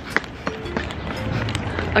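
Footsteps and knocks from a handheld camera on the move, over a low, steady rumble of city background noise. Faint music plays briefly about a third of the way in.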